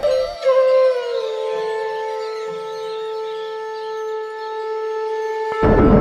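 A conch shell (shankh) blown in one long held note, its pitch dipping slightly at the start and then steady; it cuts off suddenly near the end as music comes in.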